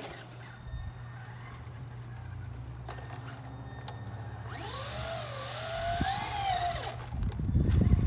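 Radio-controlled truck's brushed electric motor whining under throttle for about two seconds, the pitch rising and wavering, then cutting off. A louder low rumble sets in near the end.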